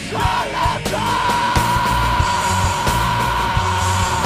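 Screamo/post-hardcore band recording with drums and distorted guitars. From about a second in, a long high note is held over the band.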